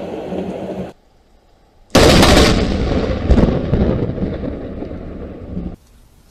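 Close thunder from a nearby lightning strike: a sudden crack about two seconds in that rolls off into a fading rumble over roughly four seconds, then cuts off abruptly. Before the crack, the rumble of an earlier strike also stops abruptly, just before a second in.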